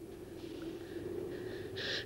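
A person's audible breaths, a soft one about half a second in and a louder one near the end, over a low steady tone.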